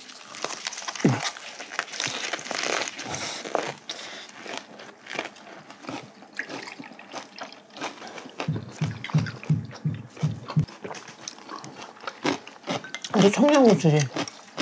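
Close-up chewing and crunching of lettuce wraps filled with fresh vegetables. From about eight seconds in, a drink glugs from a bottle into a small glass in a quick run of about eight pulses. A hummed "mm" comes near the end.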